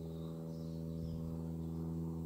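Steady electrical hum made of several evenly spaced tones, with no other sound.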